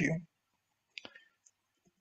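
Speech trails off, then a pause in which a single faint, short click sounds about a second in.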